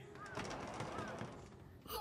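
Quiet ambience with two faint, short bird chirps about a second apart.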